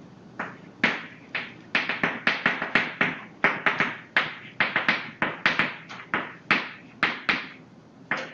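Chalk writing on a blackboard: an irregular run of sharp taps and short scrapes, about three strokes a second, as a line of words is written.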